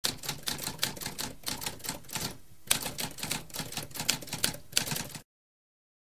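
Typewriter keys striking in quick, irregular succession, with a brief pause just after halfway, then stopping a little after five seconds.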